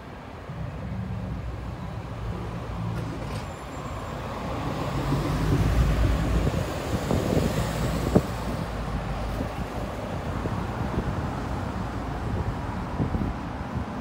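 City road traffic: cars going by on a multi-lane street, one passing loudest about five to seven seconds in. A single sharp knock comes about eight seconds in.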